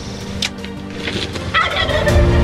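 A wild turkey tom gobbles once near the end, a quick rattling call. A single sharp snap comes about half a second in.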